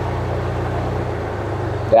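Pontiac Fiero's engine idling with the air-conditioning compressor engaged, a steady low hum. The compressor is staying on longer as R134a refrigerant is drawn in, a sign that the low charge is coming up.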